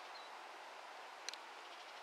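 Faint steady background hiss with no voice, broken once by a single short click a little over a second in.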